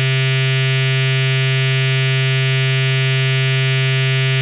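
A steady electronic buzzing drone held at one low pitch, with a dense, bright stack of overtones and no beat, part of a noise-rap track.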